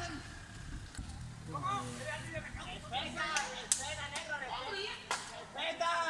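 Street fight caught on a phone from a distance: several people's voices, with three sharp smacks, blows in a beating, in the middle of the stretch.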